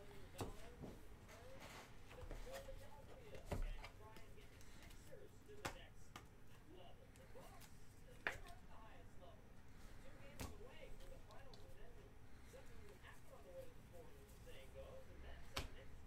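Trading cards and plastic card holders being handled: scattered light clicks and taps, about seven over the stretch, with a faint voice underneath.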